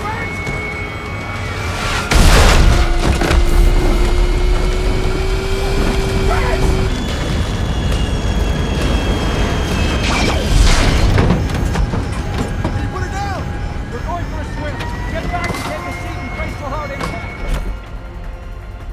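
Film action sound effects: a heavy boom and crash about two seconds in, as the airliner cabin is thrown about, and a second hit about ten seconds in. Both sit over a steady low rumble and sustained score tones.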